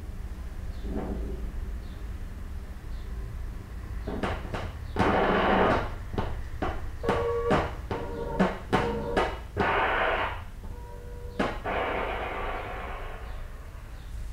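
An intro collage of sounds rather than the song itself: a steady low hum with scattered clicks, short bursts of hiss and brief steady beeping tones, something like radio static.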